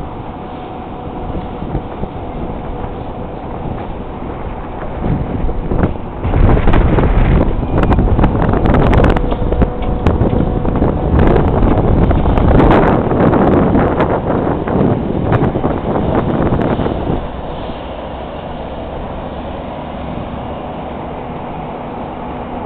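Steady mechanical hum with a faint held tone, overtaken from about five seconds in by about twelve seconds of strong, irregular wind buffeting on the microphone, before settling back to the hum.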